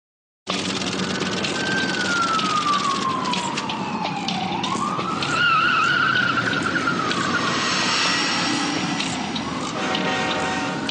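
Sound effects of an animated logo intro, starting about half a second in: a steady whooshing noise with scattered clicks, under a single tone that slides slowly down, rises again with a wobble around the middle, and slides down once more near the end.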